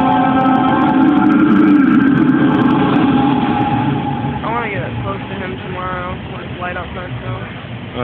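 Held choir-like chords, fading out about four seconds in. Then a few short, rising-and-falling voice sounds over a low crowd murmur.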